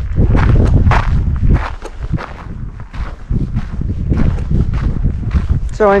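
Footsteps walking, about two to three steps a second, over a steady low rumble.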